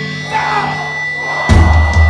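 Crowd whoops and shouts over a held low note, then the hardcore punk band comes in loud about one and a half seconds in, with pounding drums and heavy low end.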